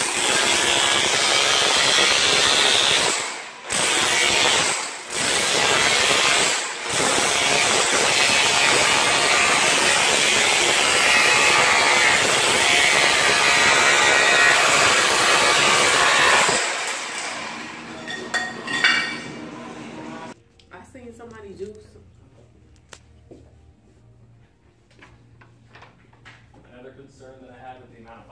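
Corded electric chipping hammer with a chisel bit hammering up ceramic floor tile and the thinset beneath it. It runs loud and continuously, with three brief stops in the first seven seconds, and falls silent about two-thirds of the way through.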